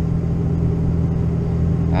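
Steady low rumble of a vehicle running, heard from inside its cab, with no change in pitch or level.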